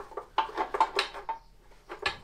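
A few light metallic clinks and taps from a small metal pipe and its fittings knocking against the engine as it is worked into place, some with a brief ring.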